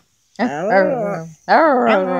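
Small long-haired dog howling: two drawn-out howls, the first wavering up and down in pitch, the second starting about halfway through and held on a steady pitch.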